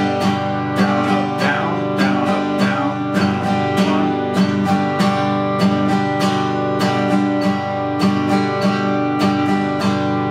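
1924 Martin 0-28 acoustic guitar strummed on a G major chord in a steady repeating pattern of down, down-up, down, down-up strokes at 100 beats per minute.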